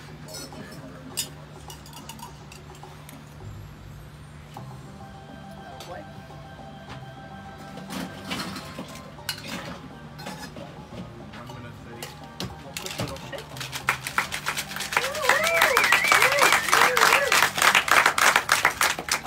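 Ice rattling hard in a metal cocktail shaker being shaken. It starts about three-quarters of the way in and quickly becomes loud and fast, after quieter clinks of glassware and bar tools. Wavering pitched tones from a voice or music ride over the shaking near the end.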